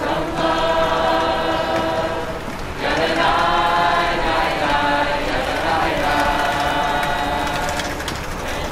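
A group of people singing together unaccompanied, in long held notes, with new phrases starting about three and about six seconds in.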